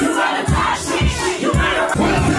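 A hip hop beat with deep bass kicks about twice a second, the kicks coming back in about half a second in, under a crowd shouting along.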